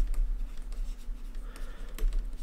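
Stylus writing on a tablet screen: faint scratching strokes and small taps as words are handwritten, with a sharp tap at the very start. A steady low electrical hum runs underneath.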